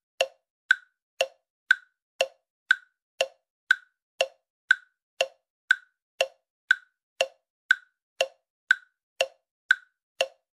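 Clock ticking sound effect, an even tick-tock of about two ticks a second, alternating higher and lower. It marks the time given for thinking over the quiz questions.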